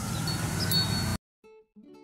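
Outdoor background hiss that cuts off suddenly a little over a second in, then quiet acoustic guitar music begins with plucked, sustained notes.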